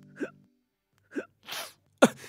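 A person's short non-word vocal sounds: two brief exclamations and a sharp, breathy burst like a gasp or sneeze, separated by silence. Faint background music fades out about half a second in.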